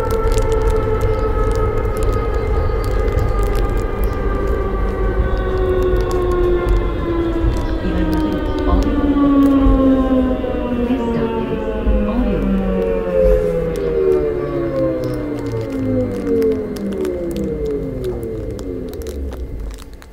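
Uijeongbu light-rail train's electric drive whining in several tones that fall steadily in pitch as the train slows, over a low rumble. The whine dies away near the end.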